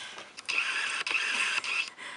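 Paper rustling and sliding as drawings are pulled from a package, a steady papery hiss from about half a second in until just before the end, with a few small crackles.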